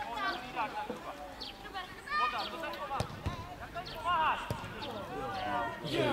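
Young footballers' high voices shouting and calling out across the pitch, with the thud of a football being kicked about three seconds in and again about a second and a half later.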